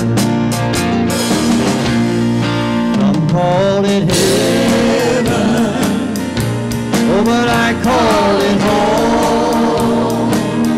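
Live gospel praise band playing a song with drums, electric guitar, bass and keyboard, a steady drum beat throughout. Singers' voices come in about three and a half seconds in.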